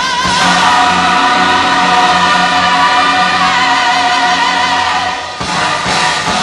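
Gospel choir singing a long held chord with musical accompaniment. The sound breaks off briefly near the end, then the next phrase begins.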